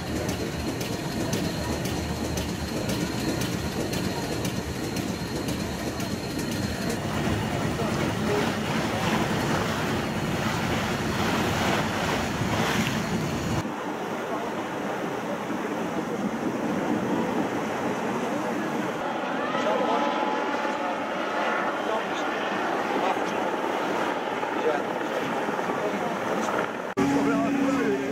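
Steady wind and water noise on board a boat under way, with a deep rumble under it for the first half. After a cut about halfway through, the deep rumble drops away and lighter wind and water noise remain.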